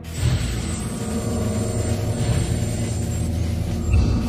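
Low, steady rumbling drone of the documentary's underscore, with sustained tones held throughout.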